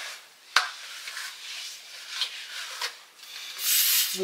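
A detangling brush drawn through a wet kinky curly human-hair wig, making soft rubbing, rasping strokes. There is a single sharp click about half a second in and a short burst of hiss near the end.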